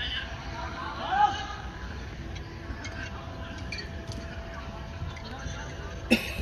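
Footballers' voices calling across the pitch, with one loud shout rising in pitch about a second in.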